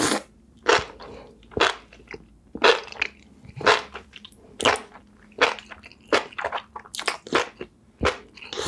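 Close-miked eating of sauce-coated enoki mushrooms: a loud bite at the start, then wet, crunchy chewing about once a second, a little quicker near the end.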